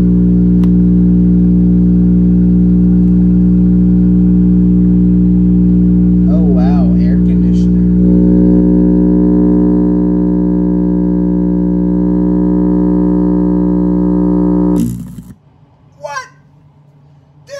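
Sony bookshelf speaker overdriven with a steady low tone: a loud, distorted buzz. About eight seconds in it turns harsher, with more high overtones, and about a second before the end it dies away.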